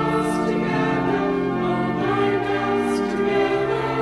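A choir singing a hymn in held, slow-moving chords, with two sibilant consonants standing out, one near the start and one about three seconds in.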